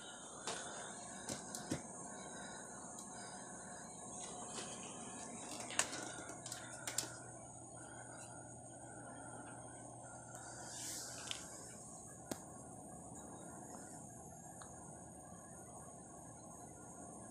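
Quiet room with a steady high hiss, broken by a few soft clicks and taps as a person steps barefoot onto a digital bathroom scale and waits for the reading.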